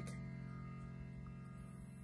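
Korg Kross keyboard's clock-chime voice ringing out: held chime tones slowly fading away.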